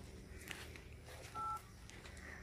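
A single short telephone keypad tone, two pitches sounding together, about one and a half seconds in, over faint background noise.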